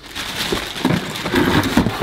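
Clear plastic packing bag crinkling and cardboard packing inserts rustling as they are handled inside a cardboard box, a dense crackle of small clicks.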